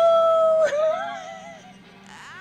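A voice holds one high 'ooh' note, then wavers and fades out under a second in, in a howl-like way.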